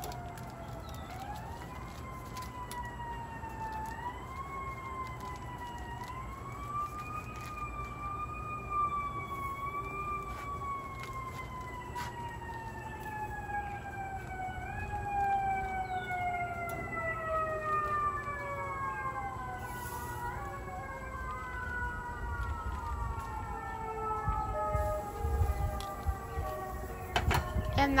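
Emergency vehicle sirens wailing, slowly rising and falling over and over, with two or more sirens overlapping in the second half, over a low steady rumble.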